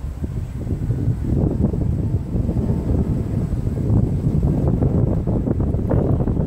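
Wind buffeting the microphone: a low, gusting rumble that grows stronger about a second and a half in.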